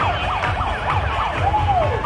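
A siren-like wail, pitched fast up and down about five times a second, then easing into one slower rise and fall near the end, over music with a steady thumping bass beat.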